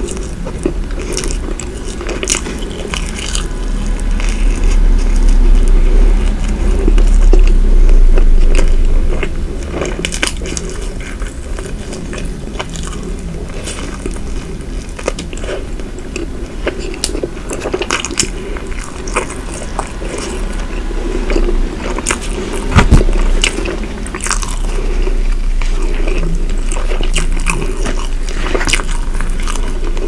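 Close-miked biting and chewing of a flaky croissant filled with whipped cream, with many small crisp crackles from the pastry over soft wet mouth sounds. It gets louder for a few seconds about a quarter of the way in, and there is one sharp loud knock about 23 seconds in.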